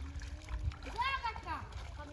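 A person's voice calling out briefly, rising then falling in pitch, about a second in, over a steady low rumble of wind on the microphone.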